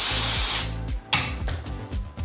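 Aerosol brake and parts cleaner sprayed in two bursts: a hiss over the first half-second, then a louder short spray about a second in with a thin high whistle. Background music plays underneath.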